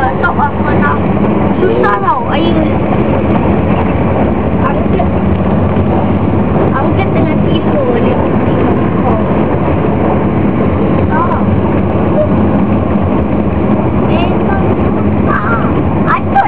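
Coach engine and road noise heard inside the passenger cabin, a loud steady drone with a low hum, while passengers talk in the background.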